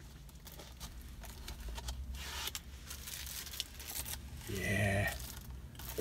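Plastic Blu-ray case being handled and turned over in the hands, with faint clicks and rustling. A brief voice sound from the man comes about four and a half seconds in.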